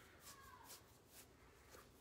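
Near silence, with a few faint rustles of a buckskin piece being handled and lined up.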